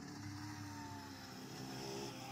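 Aprilia RS 125's single-cylinder four-stroke engine running as the bike is ridden round the track, heard faintly, its pitch easing slightly down early on.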